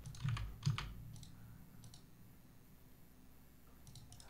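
A few clicks of a computer mouse and keyboard, spread over about the first second and a half, then a quiet stretch.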